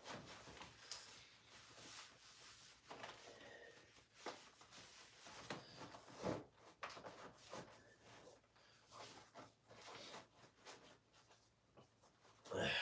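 Near silence in a small room, broken by faint, scattered rustles and small knocks of someone moving about and handling things.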